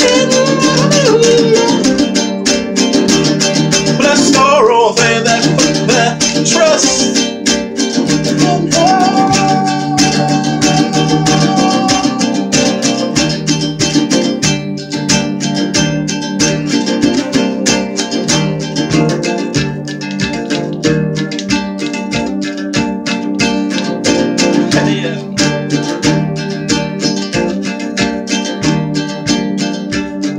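Strummed acoustic string instrument playing steadily, with a man singing over it in the first part, including one long held note, then playing on without voice.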